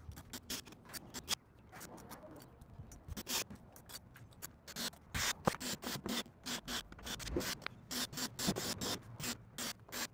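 Irregular clicks, taps and scraping from tools and screws being handled on a plywood bench top.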